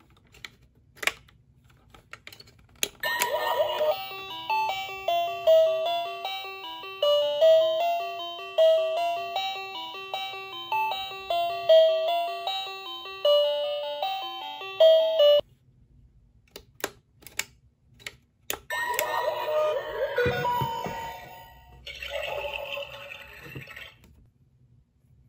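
Toy rice cooker's built-in sound chip playing a tinny electronic jingle of single stepping notes, like a doorbell tune. It starts after a button click, lasts about twelve seconds and cuts off suddenly. After a few more plastic button clicks, shorter electronic sound effects play near the end.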